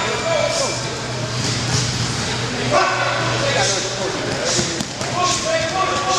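Several men shouting and calling out over one another in a gym during sprint drills, over a steady low hum.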